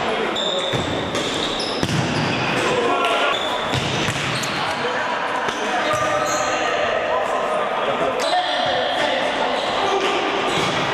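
Futsal ball being kicked and bouncing on a hard sports-hall floor, with players calling out to each other, all echoing in a large hall. Sharp knocks come every second or so.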